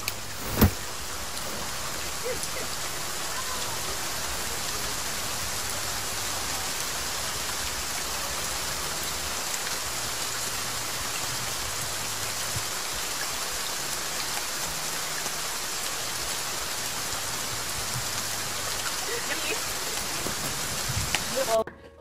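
Heavy rain falling steadily on a concrete driveway, an even hiss. A sharp knock about half a second in.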